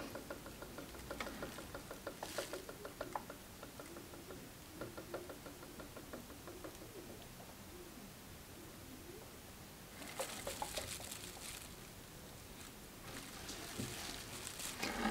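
Faint, irregular gurgling of sublimation ink draining from an upturned bottle into an Epson EcoTank ET-3760's cyan tank, with air bubbling up into the bottle: the sign that the tank is still filling. A brief rustle comes about ten seconds in.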